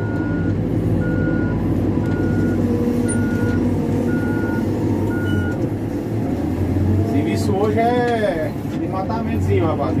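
Diesel engine of a CAT backhoe loader running steadily, heard from inside the cab, with its reversing alarm beeping about once a second, six beeps that stop about five and a half seconds in as the machine finishes backing up.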